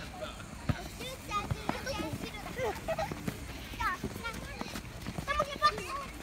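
A group of young children shouting and calling out in high voices while chasing a soccer ball, with scattered dull thuds of running feet and the ball being kicked.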